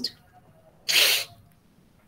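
A person's single short, sharp burst of breath about a second in, like a stifled sneeze.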